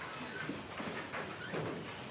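An audience getting to its feet in a lecture theatre: shuffling, seats knocking and scattered low murmuring.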